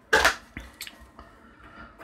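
A short burst of noise right at the start, then faint light clicks and rustles of a hard plastic case being handled.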